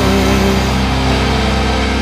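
Rock music: a distorted chord held and ringing out, with no drum hits.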